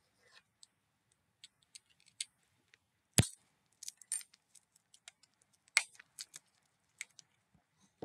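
Scattered clicks, taps and rustles of an ice cream pint and its lid being handled, with a sharp knock about three seconds in and another near six seconds.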